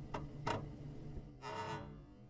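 Intro sound effect: a few sharp ticks, then a short buzzing tone with overtones about one and a half seconds in.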